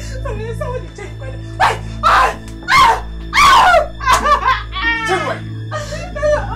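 Loud bursts of laughter, several short peals and then a quicker run of giggling near the end, over steady background music.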